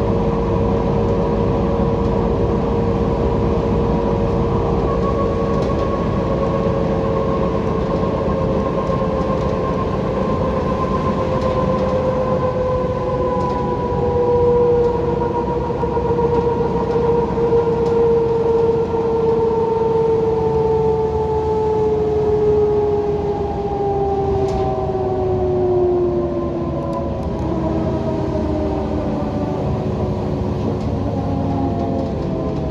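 Inside a Heuliez GX127 city bus at speed: a steady engine and road rumble, with a whine from the driveline that slowly falls in pitch over the second half as the bus slows.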